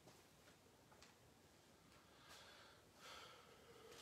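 Near silence, with faint breaths from a man exerting himself during dumbbell squat-to-deadlift reps, coming twice in the second half.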